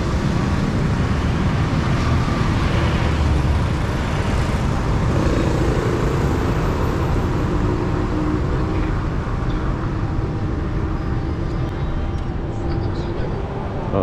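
City street traffic: a steady rumble of cars and motorcycles passing on the road, with one engine drone swelling and fading in the middle.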